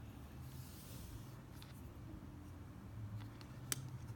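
Faint handling noise of fingers working a baitfish onto a steel rigging needle, over a low steady hum, with a few light ticks and one sharp click near the end.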